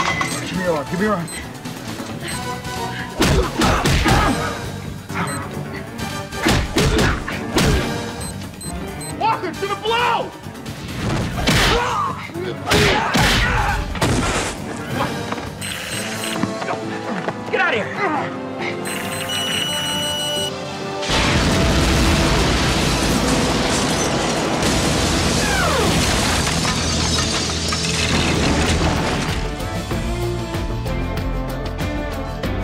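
Dramatic TV action-scene soundtrack: music under a run of sharp hits and voices, a brief high beep, then from about two-thirds of the way through a loud, sustained explosion roar over the music.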